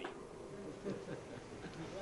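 Faint steady buzzing hum with weak, indistinct voices underneath, in a gap between a preacher's phrases.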